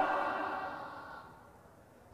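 Echo of a man's voice through a public-address system, fading away steadily over about a second after he stops speaking, then near silence.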